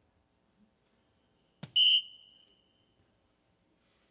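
A soft-tip dart strikes an electronic dartboard with a sharp click, followed at once by the board's loud, high electronic beep, which fades out over about a second, registering a single 15.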